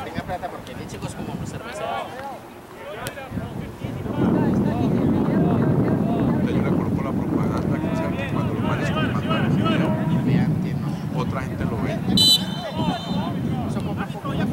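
Wind rumbling on the microphone over scattered voices and shouts on a soccer field. About 12 seconds in comes a short, shrill referee's whistle blast, the loudest sound, and play stops.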